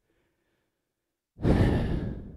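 A man's sigh, one breathy exhale close on a headset microphone, starting about one and a half seconds in after a silent pause and fading away.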